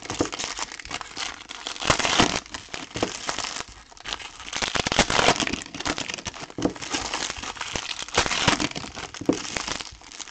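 Shiny foil wrappers of Topps Match Attax Chrome trading-card packs crinkling as they are handled and pulled open by hand, in irregular surges.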